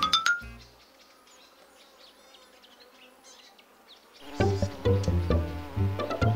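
Music ends with a rising slide, then a cartoon fly's wings buzz faintly for about three seconds before music starts again with a repeating bass line about four seconds in.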